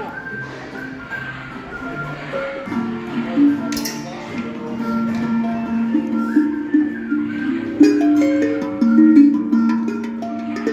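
Steel tongue drums struck with mallets, their pitched notes ringing and overlapping. More notes are struck in the second half.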